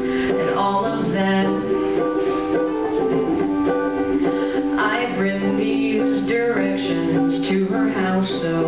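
Small ukulele strummed through a chord progression in an instrumental passage between sung verses of a live folk song.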